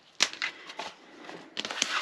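Cardboard journal covers and a pen being handled on a cutting mat: a sharp knock about a quarter-second in, then soft scraping and rustling that gets busier near the end as the covers are picked up and shifted.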